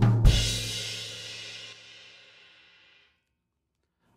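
Drum kit: the last stroke of a short fill that descends around the toms lands on beat one with a crash cymbal and bass drum about a quarter second in. The crash and the floor tom ring on and fade away over about three seconds.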